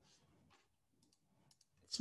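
Near silence, with a few faint clicks from the computer's keyboard and mouse.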